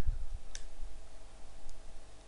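Two computer mouse clicks: a sharp one about half a second in and a fainter one near the end.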